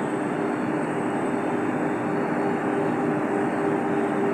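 A steady mechanical hum: an even hiss with a constant low drone of two held tones, unchanging throughout.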